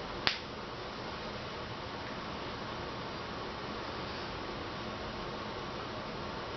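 Steady hiss of room tone with one sharp, short click a fraction of a second in.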